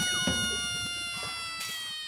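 A drawn-out, meow-like sound effect: a quick downward swoop, then a long pitched cry that slides slowly lower and fades away.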